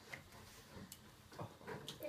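Quiet room tone with a few faint, scattered clicks.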